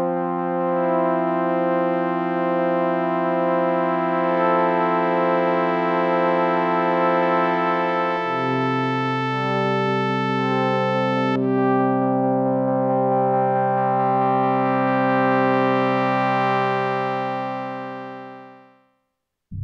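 Korg Minilogue polyphonic analog synthesizer playing slow sustained chords on a lo-fi patch, one note pulsing in a slow wobble. The chord changes about eight seconds in and again a few seconds later, then the sound fades away near the end.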